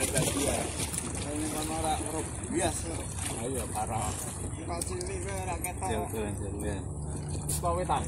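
Indistinct voices of people talking, over a steady low background rumble.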